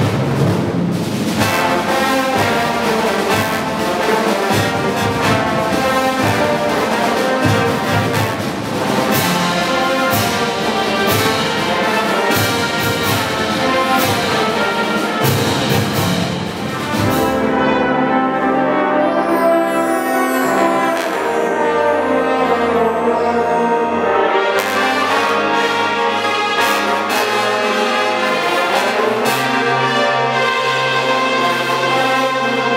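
Brass band of trumpets, euphoniums and tubas with snare and bass drums playing a concert overture. About seventeen seconds in, the drums drop out for several seconds of held brass chords, then come back in with the full band.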